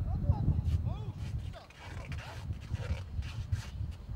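Short shouted calls from voices around a football pitch, heard at a distance over a low rumble.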